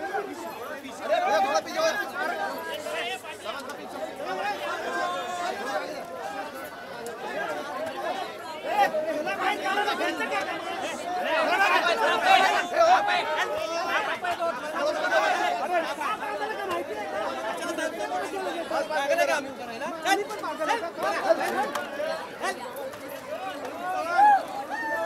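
A dense crowd of many people talking and calling out over one another, with brief louder surges of voices.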